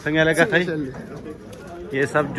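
A man's voice calling out in drawn-out, sing-song tones: a loud gliding call at the start, then a quieter, lower call.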